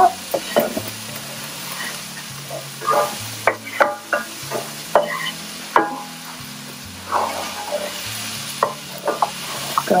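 Diced onions sizzling in oil in a frying pan on medium heat, stirred with a spatula that scrapes and clicks against the pan at irregular moments.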